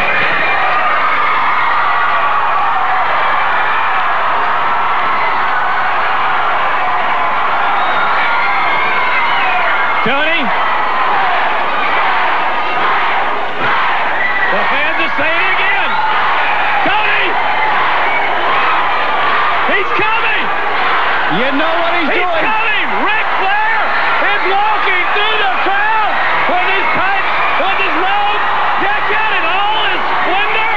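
Arena crowd cheering and yelling: a dense, steady din of many voices, with individual shouts and whoops rising out of it.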